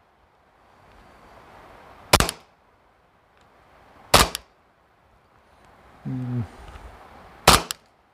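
Three single shots from a G&G Piranha MK1 gas blowback airsoft pistol running on green gas, each a sharp crack, a few seconds apart.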